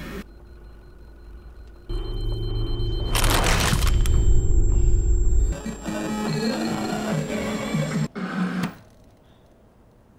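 TV drama soundtrack music: a low steady synth drone swells in about two seconds in, with a loud noisy surge a second later. A wavering tone follows, then a short burst, and the sound fades low near the end.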